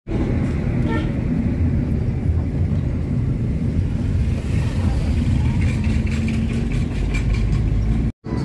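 Car driving, heard from inside the cabin: a steady low rumble of engine and road noise.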